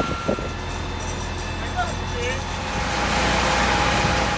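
Fire engine running steadily with a low rumble, with people's voices faint in the background.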